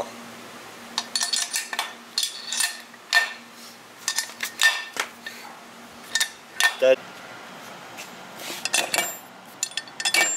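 Crankshaft and aluminium crankcase half of a Yamaha Zuma's Minarelli 50cc two-stroke engine clinking and knocking together as they are handled, a scattering of short metallic clinks with a slight ring. The crank's main bearing is worn out.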